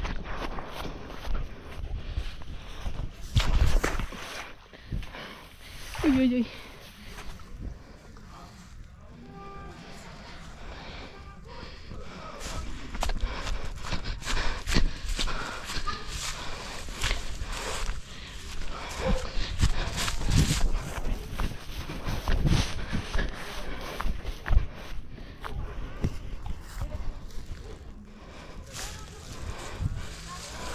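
Footsteps and rustling through tall grass, with irregular knocks and scrapes from a camera carried low in the grass. A short voiced exclamation, "oi oi", about six seconds in.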